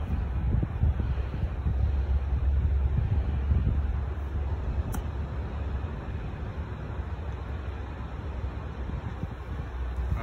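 Wind buffeting the microphone: a steady low rumble that eases off in the second half, with a single faint click about halfway through.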